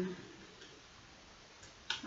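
A quiet pause filled with faint handling of paper planner pages and stickers, then one short, sharp click near the end.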